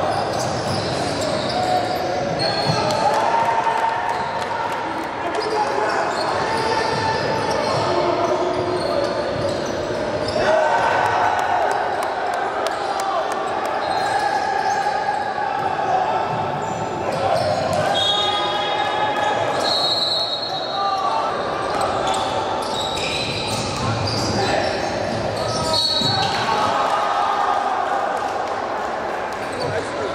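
Live sound of a basketball game in a gym: a basketball bouncing on the hardwood court, sneakers squeaking in short high chirps, and players' and onlookers' voices, all echoing in the large hall.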